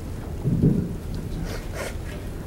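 A single dull, low thump about half a second in, over a steady low room hum, with a faint click near the end.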